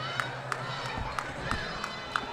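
Low background ambience of a fight venue: faint distant voices and crowd murmur over a steady low hum, with a few short, light knocks.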